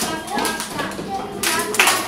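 A group of young children and an adult clapping their hands: a run of sharp, uneven claps.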